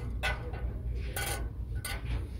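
A few light clinks and rubs of a glass tumbler and ceramic mugs being handled on a metal display rack, over a low steady background hum.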